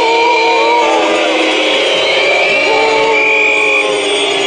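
Music with singing, the voices holding long steady notes and sliding between them.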